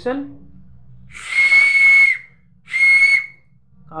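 Small green plastic toy whistle blown twice, loud and shrill with one steady high note and breathy noise. The first blast lasts about a second and the second is shorter.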